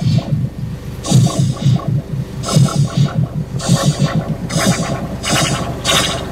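Ride train running along its track: a rapid, uneven clatter of about four to five thumps a second, with bursts of hissing noise coming and going.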